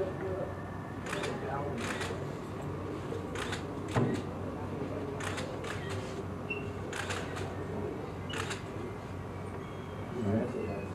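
Steady room noise with a low hum and faint background talk, broken by sharp clicks at uneven intervals, about eight in all.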